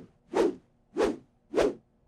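Cartoon whoosh sound effects: a quick run of short swishes, about one every half second or so.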